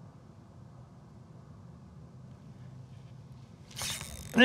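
Faint steady low hum through a quiet stretch of slow lure retrieving. Near the end comes a sudden short rush of handling noise as the angler sweeps the rod back to set the hook on a bass bite.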